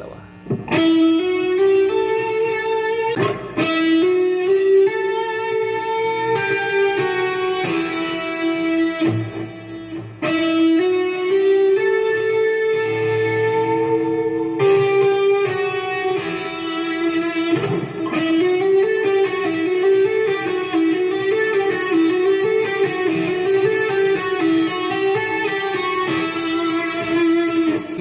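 Fender electric guitar playing a legato exercise in E minor. The notes step up the neck with hammer-ons and back down with pull-offs, with no picked attack on most notes, and the run is repeated over and over with one short break about ten seconds in.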